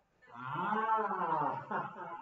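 A low, drawn-out vocal sound that rises and then falls in pitch, starting a moment in.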